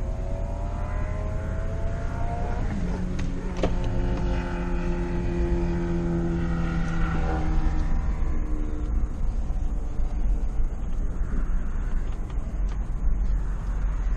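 Ford Expedition engine and road noise heard from inside the cabin as the truck drives off. The engine note climbs over the first few seconds, holds steady, then fades into a steady road rumble.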